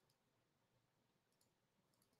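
Near silence, with a couple of very faint clicks about one and a half seconds in.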